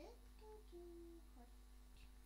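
A person humming very faintly: a short rising note, then a few brief held notes.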